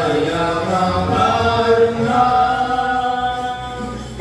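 Telugu Christian worship song sung by stage singers, with long held notes.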